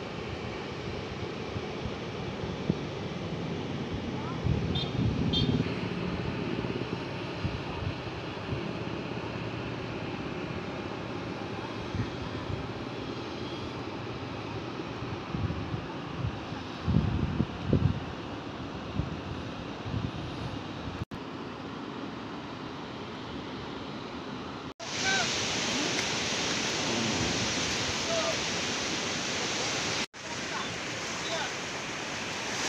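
Wind buffeting the microphone outdoors, a steady rumble with a few louder gusts, switching abruptly a few seconds before the end to the steady hiss of surf breaking on a beach.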